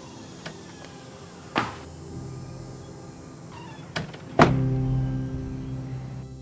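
Over soft background music with held tones, a wooden front door creaks and shuts with a sharp thump about four and a half seconds in, after a lighter knock earlier.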